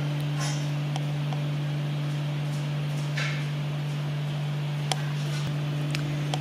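A steady low hum throughout, with a faint swish of sewing thread being drawn by hand through the sewing machine's tension discs and one small click near the end.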